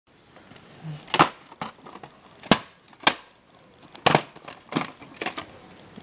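Handling noise close to the microphone: about seven sharp clicks and knocks, irregularly spaced, as things are picked up and moved.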